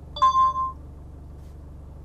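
Hupejos V80 dash cam giving a short electronic chime, about half a second long, in reply to a spoken voice command.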